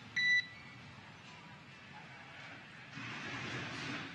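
A short high radio beep on the air-to-ground comm loop, right after a comm-check call, marking the end of the transmission. It is followed by faint hiss on the open channel that swells about three seconds in.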